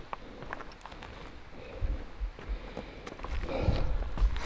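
Footsteps on a rocky dirt hiking trail: scattered crunches and knocks, with a couple of firmer steps about two seconds in, getting busier near the end.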